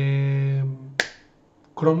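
A man's drawn-out 'eh' hesitation sound, then about a second in a single sharp snap from his hands.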